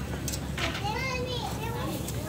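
A child's high-pitched voice calling out in one drawn-out, rising and falling stretch, over a steady low background rumble.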